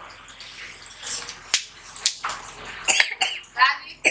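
Ginger and chopped onions sizzling in hot oil in a steel pan, with two sharp clicks of the plastic ladle about a second and a half and two seconds in. A voice comes in during the second half.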